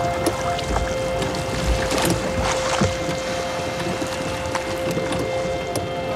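A rowing boat on the water, oars working with a few splashes, under a held music drone.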